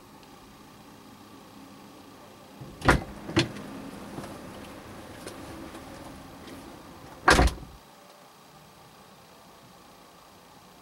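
A car door shutting, heard from inside the cabin: two sharp knocks about three seconds in, quieter movement over the next few seconds, then the loudest thud a little past seven seconds.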